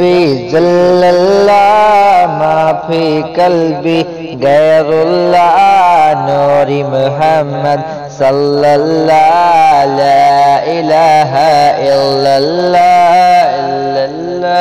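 A man singing a devotional Urdu naat in long, drawn-out melodic phrases over a steady low drone.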